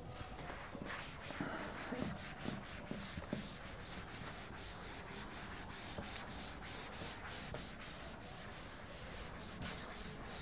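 Chalkboard duster rubbed back and forth across a chalkboard, erasing chalk writing in quick, even strokes, about three a second.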